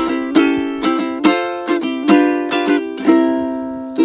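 Ukulele strummed in a steady rhythm, a chord stroke about every half second with each chord ringing on between strokes.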